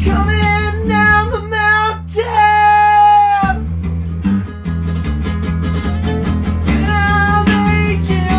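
Guitar-driven rock music with a steady bass line. A high melody line is held and bent for about the first three seconds, drops away, and comes back near the end.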